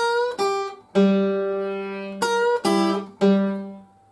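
Tacoma acoustic guitar in open G tuning, fingerpicked: a short blues lick of about six plucked notes and double-stops high on the neck, each left to ring over a sustained low G, dying away near the end.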